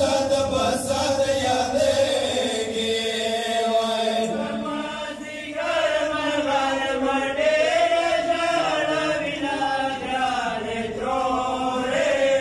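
Two men chanting a Pashto noha, a Shia mourning lament, into microphones. The voices hold long melodic lines that rise and fall.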